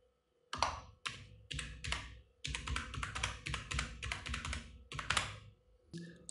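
Typing on a computer keyboard: a quick run of keystrokes starting about half a second in, with a brief pause partway through.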